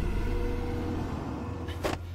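Low rumbling drone in a drama's soundtrack, fading steadily, with a faint held tone. A short whoosh comes just before the end.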